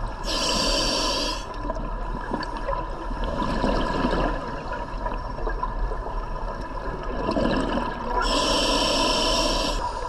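Scuba diver breathing through a regulator underwater: two long hissing breaths, one near the start and one near the end, with softer bubbling of exhaled air in between, over a steady underwater hiss.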